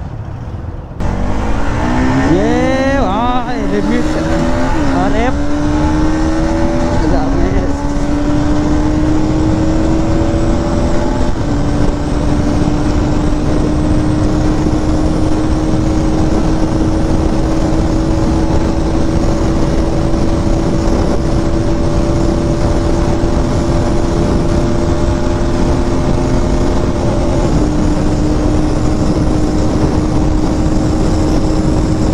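Bajaj Pulsar NS200's single-cylinder engine launched hard about a second in, its revs climbing and dropping quickly through the first gears. Then comes a long, slowly rising pull at highway speed with two more upshifts, under heavy wind noise on the microphone.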